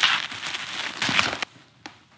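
Plastic bubble-wrap packaging crinkling and rustling as a box is pulled out of it. It stops about one and a half seconds in, followed by a single light click.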